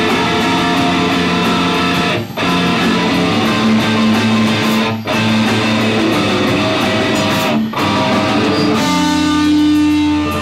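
Hardcore band playing live, loud electric guitars and bass in a heavy riff that breaks off briefly about every two and a half seconds, then moving to a new held chord about nine seconds in.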